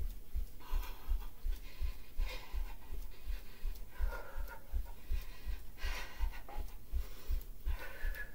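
A woman breathing hard and audibly, a breath about every second and a half to two seconds, while jogging in place barefoot on carpet. Her soft footfall thumps run at about three a second.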